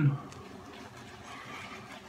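Shaving brush working lather over a stubbled cheek: a faint, even, scratchy swishing.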